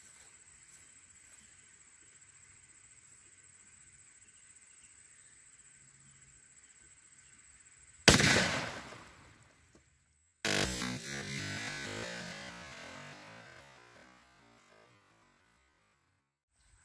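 Insects trilling faintly and steadily, then about eight seconds in a single shot from a .44 Special lever-action rifle hits a row of water-filled plastic jugs and bursts them, the noise dying away over a second or so. After a brief cut-out, a second loud, noisy passage fades over about four seconds.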